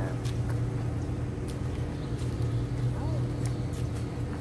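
A steady low mechanical hum, a machine running at a constant pitch, with a few faint ticks scattered through it.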